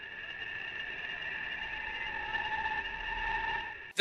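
A steady drone of a few held high tones from an animated film's soundtrack, with a low rumble swelling slightly under it near the end.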